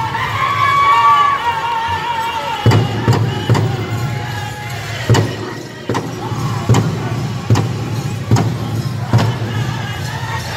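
Powwow drum group singing in high, wavering voices around a large bass drum struck in unison. After about two and a half seconds the singing falls away and the drum carries on in steady beats a little under a second apart.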